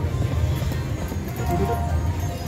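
Lock It Link Diamonds video slot machine playing its electronic game music and spin sounds as the reels spin and come to rest on a small win, with a held tone near the end.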